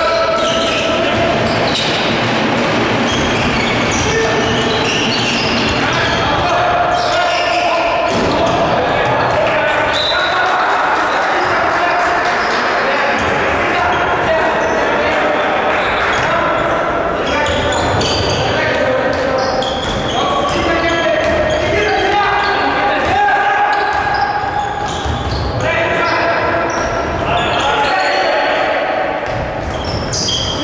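A basketball being bounced on a hardwood court during live play, echoing in a large sports hall, with voices talking and calling throughout.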